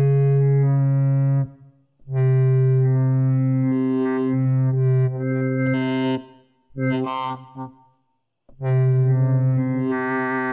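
Wavetable synth voice on an Axoloti board, played from a ROLI Seaboard Block: four held low notes with short gaps between them. The tone brightens and dulls within the long second note as the finger's up-down position on the key morphs between wavetables.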